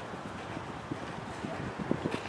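Hoofbeats of a cantering horse on grass, irregular low thuds with a couple of heavier ones near the end.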